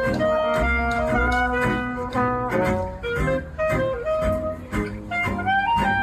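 Live jazz: a clarinet plays a melodic line of short, changing notes over a double bass.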